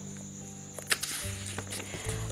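Pages of a paperback picture book being turned by hand, with one sharp paper flick about a second in and a few lighter rustles. Soft steady background music runs underneath.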